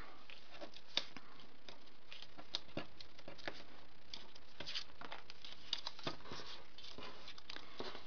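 Light rustling and small ticks of cardstock pieces being handled and pressed into place by hand, scattered and irregular.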